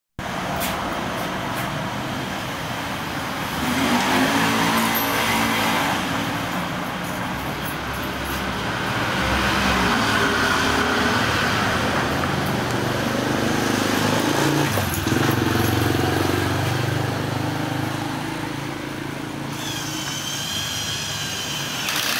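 Street traffic: motor vehicles running past, their engine sound swelling about four seconds in and again past the middle, over a steady background of road noise. A higher-pitched whine comes in near the end.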